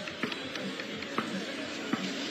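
Faint background music over outdoor court ambience, with a few sharp knocks of a basketball bouncing on the court, spaced about a second apart.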